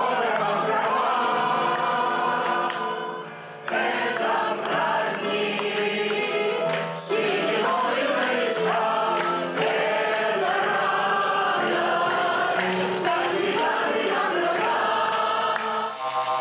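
Mixed choir of men's and women's voices singing a song, with a short break between phrases about three seconds in.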